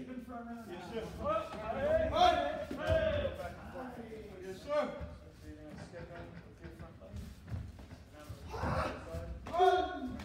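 Indistinct voices echoing in a large hall, with a few sharp thumps scattered through: kicks landing on taekwondo sparring chest protectors.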